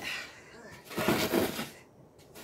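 Rough scraping of a stone rubbing and digging into loose sandy soil, one longer scrape about a second in.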